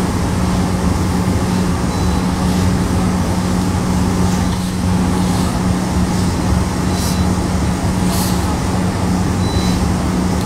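A steady machine hum with a constant low drone, from the vacuum ironing table's blower motor running while a steam iron is worked over cloth. A couple of brief hisses, likely steam from the iron, come about seven and eight seconds in.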